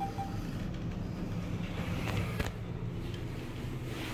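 Short beep from a Thyssenkrupp TK-55L elevator's touchscreen car panel as the door-close key is pressed, then the car doors sliding shut, with clicks and a knock about two and a half seconds in, over a steady low hum in the car.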